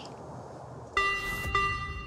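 Doorbell chime striking its first note about a second in, a ringing bell tone that holds and slowly fades.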